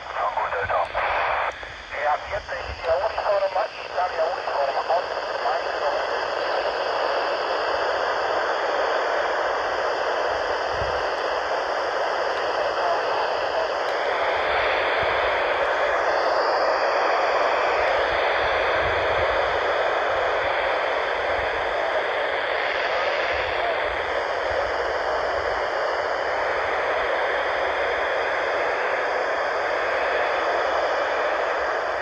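Yaesu FT-470 handheld radio's speaker playing the AO-91 FM satellite downlink: choppy radio voices of other stations for the first few seconds, then a steady rush of FM noise.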